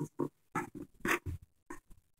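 A puppy making a quick run of short, irregular huffing sounds, about nine in two seconds.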